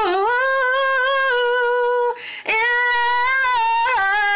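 A woman singing unaccompanied, holding a long sustained note, breaking for a breath about two seconds in, then holding a second long note.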